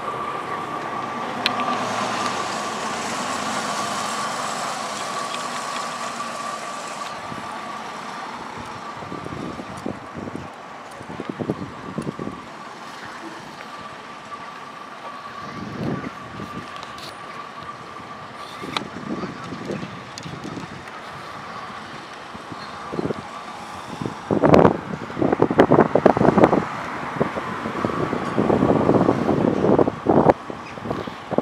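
Outdoor street ambience with road traffic, a vehicle passing in the first few seconds. Gusts of wind buffet the microphone during the last few seconds.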